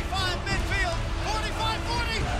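A play-by-play announcer calling a running play over background music.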